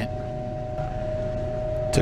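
Steady fan hum: a single constant mid-pitched tone over a low rumble.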